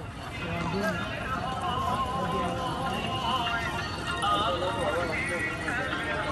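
Several voices singing a wavering melody over a fast, clattering percussion beat, in the manner of a devotional song.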